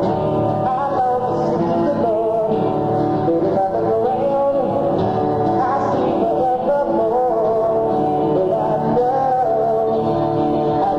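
Live band music: a wavering melody line held over a steady, full accompaniment.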